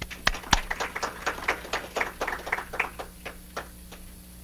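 A small audience applauding: a quick run of separate claps that thins out and stops shortly before the end.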